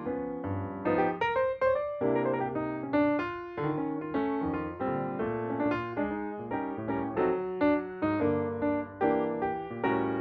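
Background piano music, a run of notes struck at an even, moderate pace.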